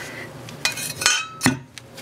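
A few light metallic clinks and knocks, one followed by a brief ringing tone about a second in: small metal parts of a stove and its anti-tip bracket being handled.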